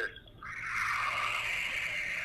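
A steady hiss with no pitch, starting about half a second in and lasting about two seconds.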